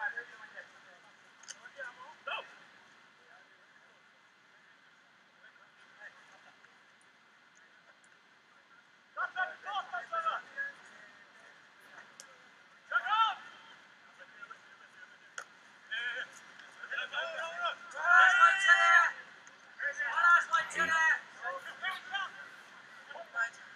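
Voices shouting short calls in bursts, starting about nine seconds in and loudest a few seconds before the end; the stretch before that is quiet.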